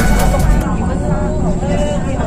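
Music cuts off about half a second in, then voices talk over the steady low rumble of a moving vehicle.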